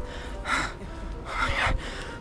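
A person breathing hard in short heavy breaths, about one a second, over background music: panting from overheating inside an inflatable costume.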